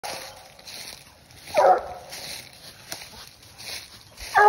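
Young black and tan coonhound gives one short bark about one and a half seconds in, over faint rustling in dry leaf litter.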